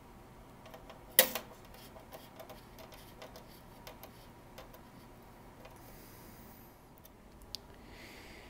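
Small hand screwdriver tightening stainless steel screws into a ribbed aluminium Porsche 911 door sill: faint scattered metal ticks and clicks, with one sharp, louder click about a second in.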